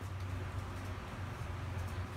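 A steady low hum with faint background room noise, and a few faint clicks near the end.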